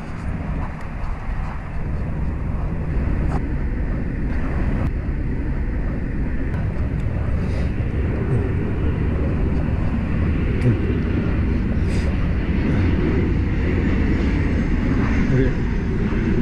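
Steady wind rush on the microphone of a moving bicycle camera, mixed with traffic running on a highway alongside.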